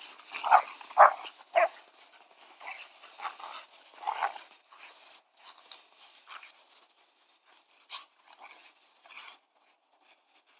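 Two dogs play-fighting in snow: short dog vocal sounds, the loudest three in quick succession in the first two seconds and another about four seconds in, among scuffling and rustling.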